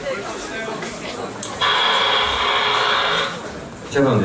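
Audience chatter in a theatre. Then a loud, steady, buzzing tone from the sound system starts suddenly about a second and a half in and cuts off abruptly under two seconds later.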